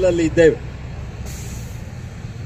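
A man's voice through a microphone ends a phrase about half a second in, leaving a steady low rumble of street traffic, with a brief faint hiss near the middle.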